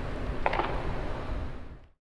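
Low background rumble of a large indoor practice hall, with one brief short sound about half a second in, fading out to silence at the end.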